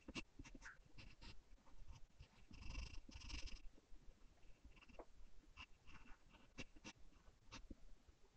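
Faint scratching of a soft 4B graphite pencil on drawing paper, in short separate strokes. About two and a half seconds in there is a quick run of back-and-forth shading strokes.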